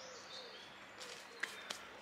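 Quiet woodland background with faint bird calls and, in the second half, three soft crackles from a small wood fire burning in a metal firebox stove.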